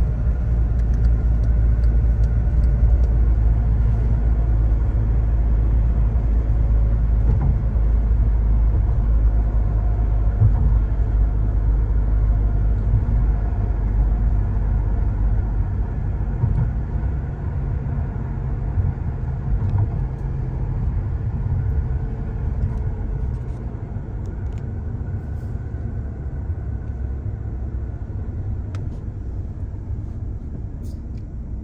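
Car driving on an open road, its tyres and engine making a steady low rumble. The rumble grows quieter in the second half as the car slows into queued traffic.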